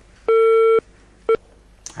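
Telephone line tone heard over the studio's phone line: one steady beep of about half a second, then a short second beep at the same pitch half a second later.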